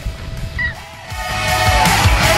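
Background music comes in about a second in and grows louder, with a steady beat.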